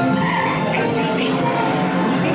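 Ride soundtrack through the attraction's speakers: music with a cartoon speedboat engine sound effect revving over it, its pitch rising and falling.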